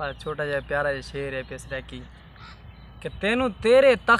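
Men talking, then two loud, short calls near the end, each rising and falling in pitch.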